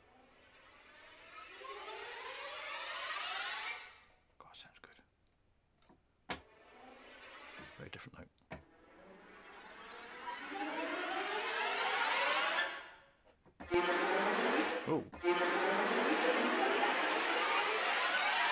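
Sampled orchestral string section playing sul ponticello tremolo risers: a scratchy, glassy tremolo that swells and climbs in pitch, three times, the last the loudest. Brief clicks in the gaps between them come from a playback glitch in the Kontakt sampler.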